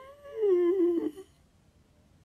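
A man's closed-mouth hum, high-pitched and wavering, in two short parts that stop a little over a second in.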